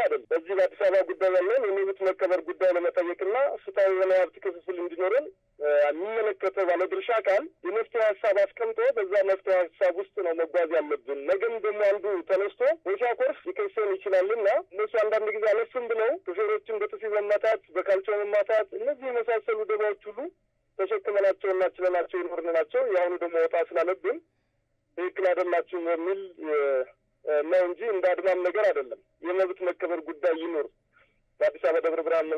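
A person talking in Amharic, with short pauses, in thin, narrow-band sound as if over a telephone line.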